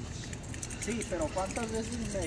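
Faint, distant voices of men talking over low outdoor background noise.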